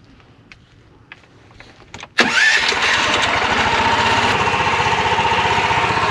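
A Predator 420 single-cylinder engine in a golf cart, exhausting through a small car muffler, is started on its electric starter. After a few faint clicks, it catches abruptly about two seconds in and then runs steadily.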